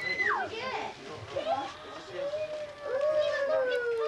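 Children's and adults' voices during present opening, without clear words. A high squeal falls sharply at the very start, and a long drawn-out vocal tone slides slowly down in pitch through the second half.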